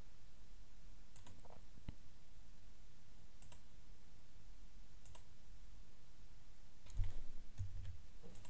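A few faint, separate computer clicks over a low steady hum, followed by a couple of soft low thuds near the end.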